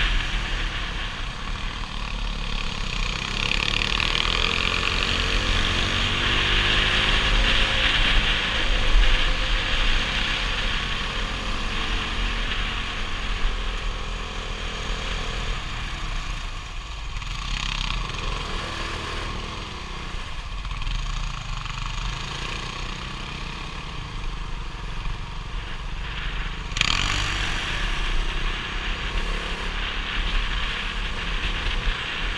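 Motorcycle engine running on the move, its pitch rising and falling as the revs change, with a steady rush of wind on the bike-mounted camera's microphone.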